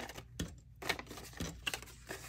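Paper dollar bills and a card savings sheet being handled on a tabletop: a handful of short, crisp paper rustles and light clicks.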